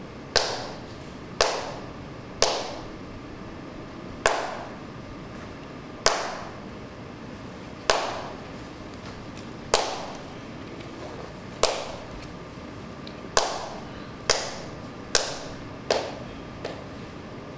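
Sharp percussive strikes, each ringing out briefly, at about two-second intervals and closer together near the end, over a faint steady hum.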